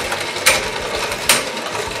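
Two metal-rimmed 魔幻陀螺 (Infinity Nado) battle tops whirring as they spin on a plastic arena, clashing together with sharp clacks about half a second in and again just past a second.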